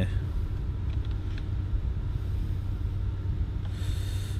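Volvo S60 T6 idling, heard from inside the cabin as a steady low rumble, with a brief soft rustle near the end.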